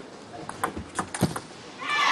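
A quick table tennis rally: a handful of sharp clicks of the celluloid ball striking rackets and table, then crowd cheering and applause swelling up near the end as the point is won.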